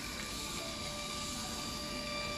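Portable thermal receipt printer printing its self-test page: a steady whirring whine from the paper-feed motor as the receipt paper feeds out, with a lower tone joining about half a second in.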